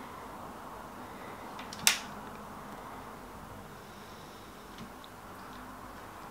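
Quiet room hiss with small handling sounds from a silicone mould and a polymer-clay piece being worked in the fingers: one sharp click about two seconds in, then a couple of faint ticks.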